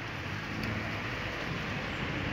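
Steady distant vehicle rumble with a low hum under a faint hiss, no distinct events.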